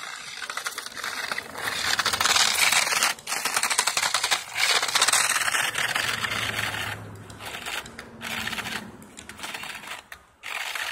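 Radio-controlled car with screw-studded tyres and a plastic plow, rattling and scraping over icy snow as it drives. The clatter comes in two loud surges, about two and five seconds in, then eases off.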